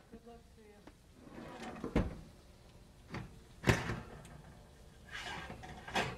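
A kitchen drawer and an oven door being opened: a few separate knocks and clunks, the loudest about three and a half seconds in.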